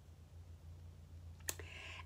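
A pause in speech: quiet room tone with a low steady hum, one sharp mouth click from the lips parting about one and a half seconds in, then a soft breath near the end.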